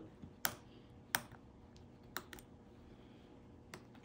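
Tweezers tapping and pressing on a glass microscope slide: about five light, irregularly spaced clicks as a fleck of moldy tortilla is crushed up on the slide.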